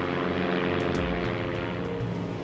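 Propeller airplane engine running in flight: a steady drone of even tones over a rushing hiss.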